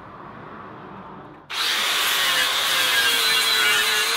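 Angle grinder grinding down a weld on a steel plough disc, starting suddenly about a second and a half in after a quiet start: a loud, steady grinding noise with a whine that drifts slightly lower.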